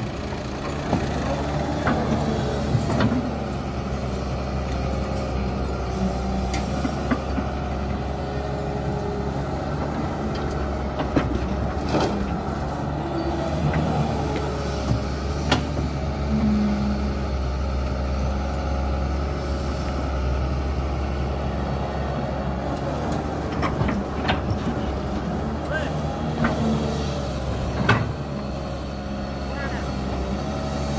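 Doosan wheeled excavator's diesel engine running steadily under hydraulic load while it digs and loads soil. Several sharp knocks are scattered through it, from the bucket and boom working.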